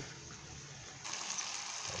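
Meat and vegetable tagine simmering over the stove, a steady hiss that gets clearly louder about a second in.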